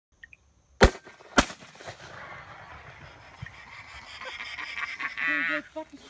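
Two shotgun shots a little over half a second apart, about a second in. A man's voice calls out near the end.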